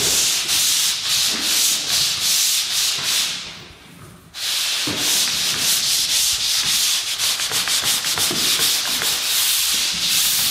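Drywall pole sander rubbing back and forth over mudded drywall in quick repeated strokes, with a brief pause about three and a half seconds in before the strokes resume.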